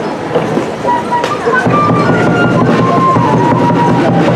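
Crowd chatter, then live festival dance music strikes up about a second and a half in: a sustained melody line over a steady drum beat, accompanying the masked dancers.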